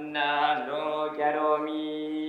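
Buddhist chanting by a male voice, long held notes over a steady low drone.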